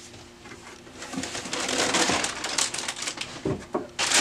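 Foil packaging bag around a new laser-printer drum unit crinkling and crackling as it is lifted out of its cardboard box and handled, starting about a second in.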